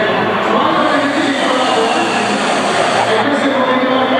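A long drag of about three seconds on a Waro Mod box-mod vape: a steady airy hiss of air drawn through the atomizer, then cut off as the vapour is about to be exhaled. Crowd chatter runs underneath throughout.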